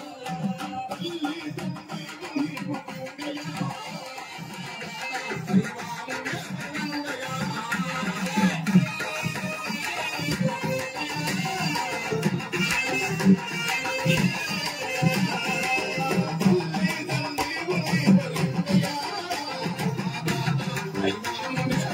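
Live bhajan folk music: barrel drums keep a fast rhythm under a keyboard melody, with the jingle of dancers' ankle bells in the mix.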